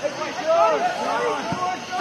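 Several men's voices shouting and calling over one another across an outdoor soccer pitch, with one sharp knock about one and a half seconds in.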